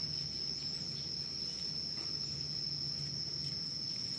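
Insects trilling in a steady, unbroken high-pitched drone, with a faint low hum underneath.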